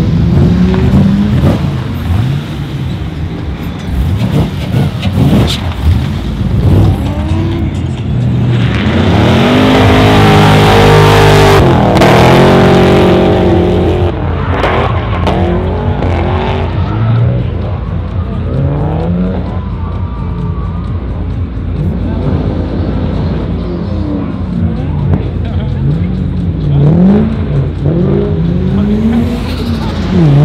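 VE Holden Commodore SS V8 engine revving hard as the car drifts, its pitch rising and falling again and again, with tyres squealing and skidding. The tyre noise is at its loudest from about nine to fourteen seconds in.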